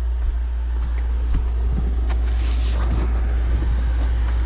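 Handling noise from someone walking through a storage room: a steady low rumble with a few light knocks and shuffles. Near the end, cardboard rustles and scrapes as a large flat box is pulled off a wire shelf.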